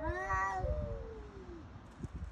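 Cat yowling during a standoff with other cats: one drawn-out call, then a second, lower call that slides down in pitch and fades out about a second and a half in.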